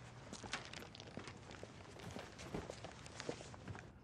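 Faint footsteps with scattered small knocks and rustles over a low, steady background hum.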